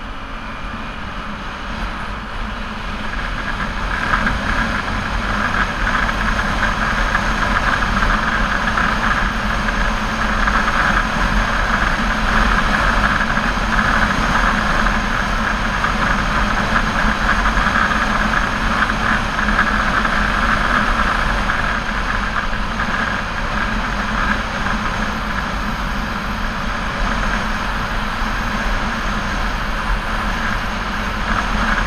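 Sport motorcycle riding at speed: a steady rush of wind and road noise with the engine's hum underneath, growing louder over the first few seconds and then holding.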